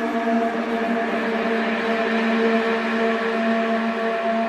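Electronic dance music from a DJ mix in a breakdown: a sustained, droning pad chord with no drums or bass.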